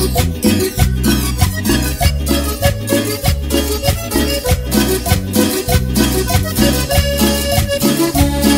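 Salsa-style Latin music with a steady percussion beat and bass; no singing at this point.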